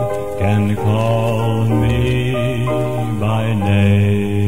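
Male gospel quartet (lead, baritone, bass and first tenor) singing sustained close-harmony chords, a deep bass voice under the held notes, with the chords shifting every second or so.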